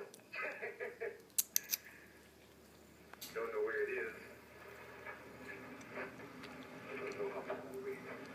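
Indistinct voice talking in short stretches, with three sharp clicks about a second and a half in.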